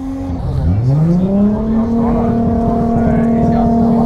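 A car engine revved up from low to high revs over about a second, then held steady at high revs.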